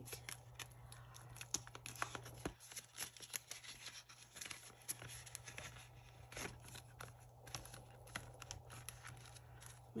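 Dollar bills and plastic cash-binder envelopes being handled: soft paper rustling and crinkling with many small, faint clicks and taps.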